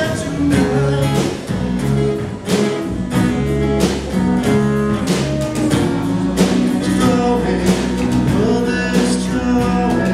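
Live band playing an indie-folk rock song: strummed acoustic guitar and electric guitar over a drum kit keeping a steady beat.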